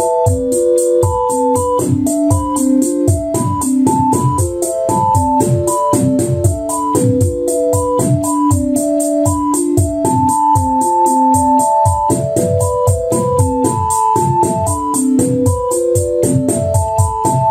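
Generative Eurorack patch sequenced by a Mutable Instruments Marbles random sampler. A synthesizer melody of randomly stepping held notes plays over a drum pattern: evenly spaced hi-hat ticks, about four a second, from Plaits in hi-hat mode, with analog kick and snare.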